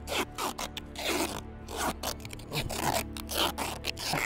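Adhesive tape being pulled off the roll and wrapped around a pair of ankles, a series of short ripping rasps.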